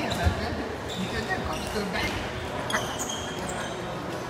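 Sports-hall sounds with indistinct voices of players and onlookers. A sharp thump comes just after the start and a smaller one about three-quarters of the way through, with short high squeaks in between, echoing in the large hall.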